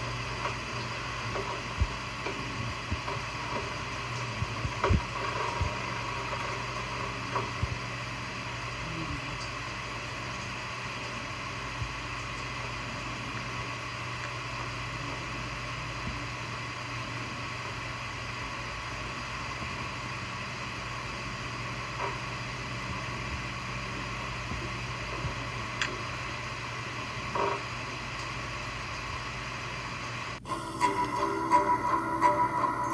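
Steady background hiss and hum from the playback of an old VHS tape over its silent title cards, with a few faint clicks.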